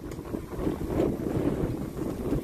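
Wind buffeting the microphone: a rumbling low noise that swells and dips with the gusts.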